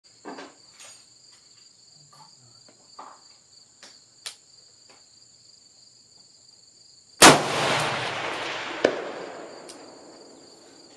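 A single rifle shot from an AR-style rifle chambered in 6mm ARC, with a long rolling echo. About a second and a half later comes a sharp, faint clang of the bullet hitting a steel target downrange. A steady high insect chorus runs throughout, with a few small handling clicks before the shot.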